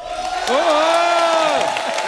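Studio audience cheering and clapping, with a long held whooping shout from about half a second in.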